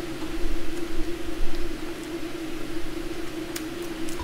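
A steady mechanical hum with a hiss over it, and a few faint mouth clicks from eating an ice cream sandwich near the end.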